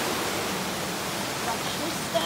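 Steady rushing of water tumbling over a river's rocky cascades below a waterfall.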